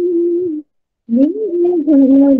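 A woman singing, heard through a video call. She holds a long, wavering note that breaks off just over half a second in. After a short silence she comes in low and slides up into the next held note.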